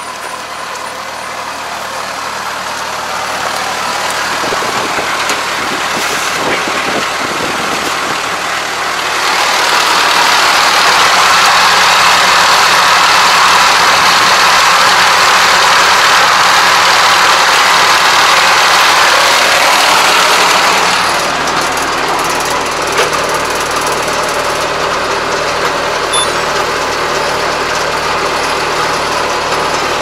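ARN460 combine harvester running, a continuous mechanical din that builds over the first several seconds, is loudest for about ten seconds in the middle, then eases to a steadier level with a low drone.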